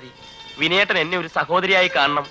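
A person's voice in two phrases starting about half a second in, its pitch quavering up and down.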